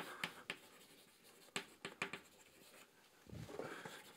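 Chalk writing on a blackboard: a faint string of short, sharp taps and scratches as the chalk strikes and drags across the board, forming words. A soft, low, muffled sound comes briefly near the end.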